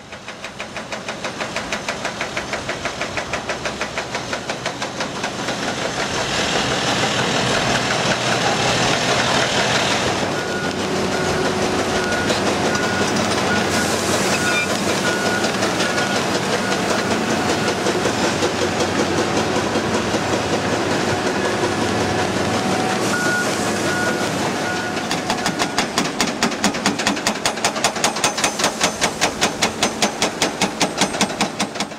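Indeco HP 12000 hydraulic hammer on an excavator breaking rock, a rapid, steady train of blows several a second. The blows grow louder and more distinct near the end.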